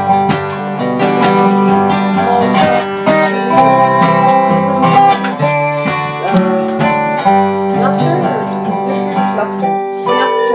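Acoustic guitar strumming chords under a steel guitar played flat with a slide bar, its notes gliding up and down between pitches in a country tune.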